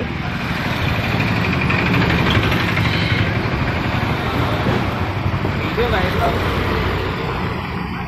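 A motor vehicle's engine and tyres passing close by on the street, swelling over the first couple of seconds and slowly fading.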